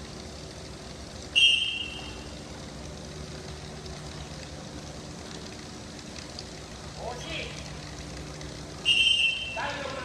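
Two short blasts of a referee-style whistle, about seven and a half seconds apart. Children's voices call out between and after them.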